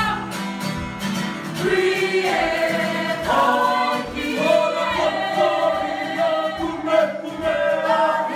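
Soundtrack music: a song sung by a group of voices together, over percussion.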